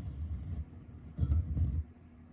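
Low rumbling handling noise on a phone's microphone as the hand works cross-stitch fabric and thread right beside it, in two short stretches: one fading about half a second in, another from just past a second to near the end.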